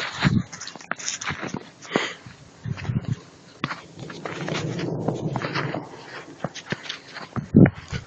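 Footsteps crunching in fresh snow, a string of short crisp crunches with a denser rustling stretch about halfway through. A short loud call near the end.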